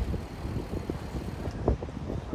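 Wind buffeting the microphone: a low, uneven rumble that flutters irregularly.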